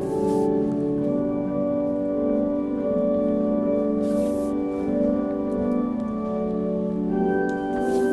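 Church organ playing slow, sustained chords that shift every second or so.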